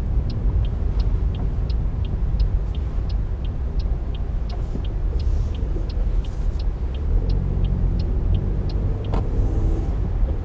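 Car turn-signal indicator ticking steadily, about four clicks a second alternating tick and tock, over the low rumble of the engine and tyres heard inside the cabin at crawling speed.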